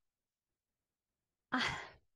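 Dead silence, then about a second and a half in, a woman takes a short audible breath that fades away, a pause-filling breath before she speaks again.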